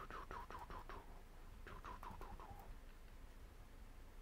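Paintbrush dabbing acrylic paint onto a canvas: a quick run of short, faint strokes, each dropping a little in pitch, for about a second, then a second run a little later.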